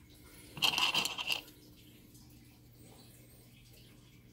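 Stone flakes and broken arrowheads clattering and crunching together in a bowl as a hand rummages for the next piece, one burst lasting under a second.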